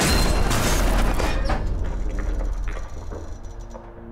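A four-wheel-drive safari truck sliding over rock and grit to a stop at a cliff edge: a loud gritty rush of tyres for about the first second and a half, then fading into scattered creaks and clicks of the vehicle as it balances on the edge.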